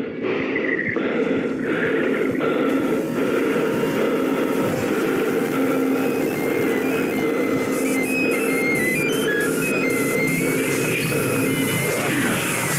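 A deliberately jarring soundtrack simulating sensory overload: music and dense layered noise play together at a steady loud level. Short high beeping tones jump about in pitch over it from about halfway through.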